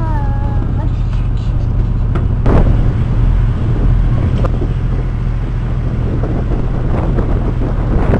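A tour boat's engine running at a steady cruising speed: a continuous low drone, with a brief bit of voice in the first second and a knock about two and a half seconds in.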